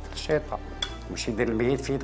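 Metal knife and fork clinking against a plate in a few sharp, short clinks as food is cut.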